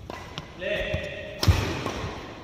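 Badminton rally: a sharp crack of a racket striking the shuttlecock about one and a half seconds in, the loudest sound. It follows a brief high-pitched squeal and a few lighter taps.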